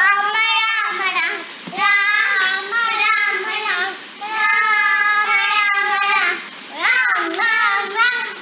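A young child singing a Hindu devotional song to Ram, solo and unaccompanied, in long held phrases with brief breaks between them.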